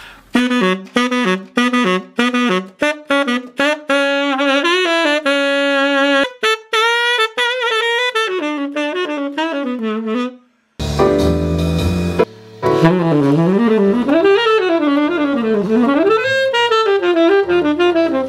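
Tenor saxophone playing a jazz swing-feel phrase: about ten seconds of short, detached notes, a brief stop, then a smoother flowing line with swooping runs up and down.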